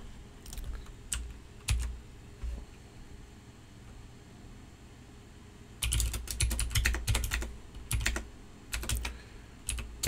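Typing on a computer keyboard. A few scattered clicks come in the first two seconds, then a pause, then a quick run of keystrokes from about six seconds in.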